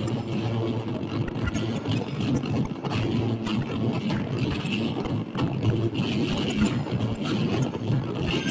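Improvised experimental noise music: a steady, dense low drone with a brighter band on top and scattered clicks and crackles, from electric guitar and a floor chain of effects pedals.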